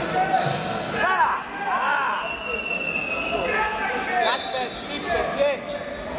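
Several people's voices calling out in a large, echoing sports hall. About halfway through, a steady high tone sounds for about a second.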